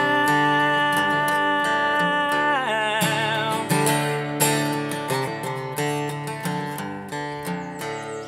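Acoustic guitar strummed and picked, under one long held sung note that ends in a vibrato about three seconds in. After that the guitar plays on alone, growing a little quieter.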